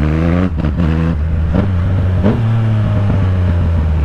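Yamaha MT-09's three-cylinder engine pulling hard under acceleration, its pitch climbing and dropping back a few times as the revs build and fall, then running steadier in the second half.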